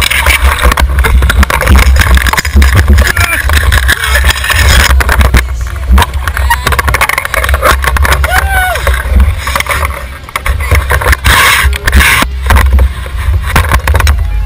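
Wind buffeting the microphone of a camera on a fishing boat, a heavy gusting rumble with frequent knocks. Voices of the people aboard come through underneath, with a short rising-and-falling call about eight and a half seconds in.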